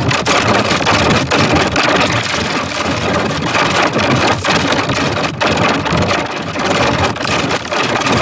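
Loud, heavily distorted audio: a harsh, dense noise with rapid crackles throughout. It is the soundtrack of a logo remix pushed through distortion effects.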